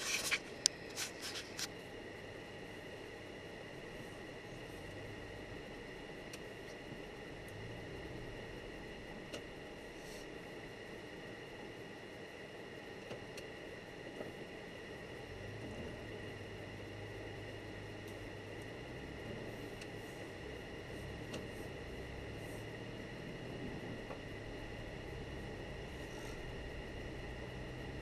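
Steady low cabin noise of a car driving on snow-packed road: engine and tyre hum. The hum shifts about halfway in, and a faint steady high whine sits over it, with a few sharp clicks in the first two seconds.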